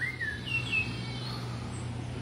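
A bird calling: a few short whistled notes that glide up and down in the first second, over a steady low hum.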